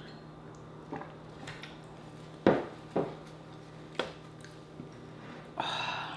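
Close-miked drinking of water from a glass: a few clicking swallows and sharp knocks, the loudest two about two and a half and three seconds in, as the glass is drunk from and set down. A short breathy sigh near the end.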